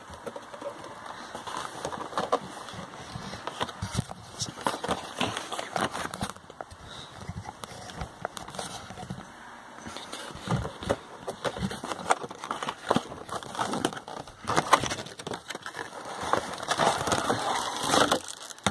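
Cardboard box and its clear plastic packaging being opened and handled: an irregular run of rustling, crinkling and scraping with scattered clicks as the toy train's tray is pulled out.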